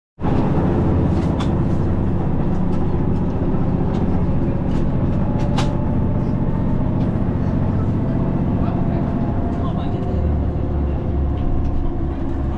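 Steady rumble of a train running, heard from inside the passenger car, with a few sharp clicks in the first half and a deeper low rumble from near the end.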